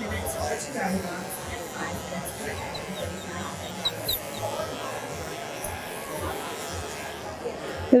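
Electric dog clipper with a comb attachment running as it is drawn through a dog's coat, under a steady background of many voices chattering and faint music.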